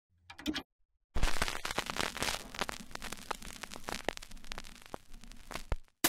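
Intro sound effect of crackling static: a short crackle, then about a second in a sudden loud burst of hiss full of clicks and pops that fades over about five seconds and cuts off.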